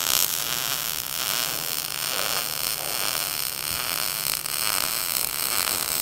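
MIG welding arc running a bead on a steel lap joint: a steady crackling buzz as the wire feeds into the puddle.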